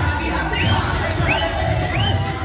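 Bhangra dance music with a heavy bass beat, under a dancing group cheering and shouting. Short high calls that rise and fall repeat about every two-thirds of a second.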